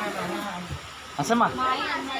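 Voices of people talking nearby, loudest a little past the middle, over a steady blowing noise.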